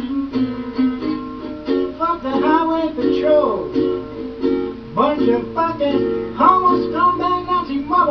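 A plucked stringed instrument playing a blues instrumental break in a small room. Notes slide down in pitch a few seconds in and up again about five seconds in.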